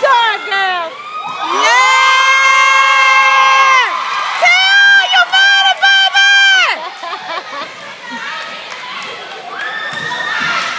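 A group of girls screaming and cheering: two long, high-pitched screams held at a steady pitch, each about two seconds, then quieter cheering and shouting through the rest.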